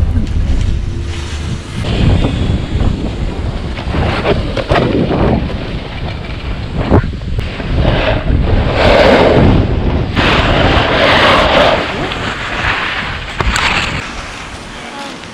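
Wind buffeting the action-camera microphone throughout, with loud scraping and hissing of ski or snowboard edges over packed snow in surges through the second half, dropping away as the run stops.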